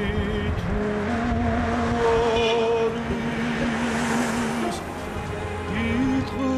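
Slow music of long held notes that step from one pitch to the next, over a steady low rumble.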